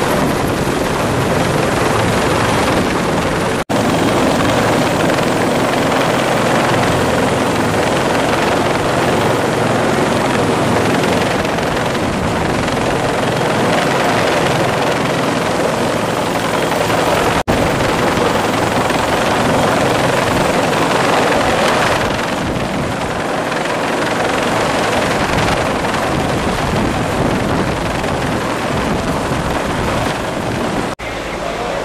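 Loud, steady helicopter rotor and engine noise from a helicopter hovering during a winch lowering of rescuers, broken by two very short dropouts, about four and seventeen seconds in.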